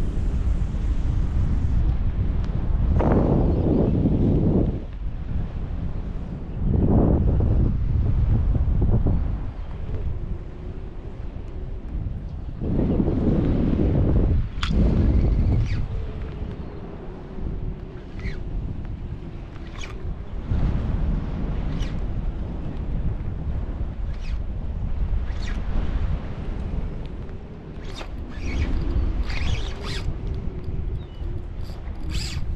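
Wind buffeting the microphone in several loud gusts over a steady wash of moving water, with a few sharp clicks scattered through the second half.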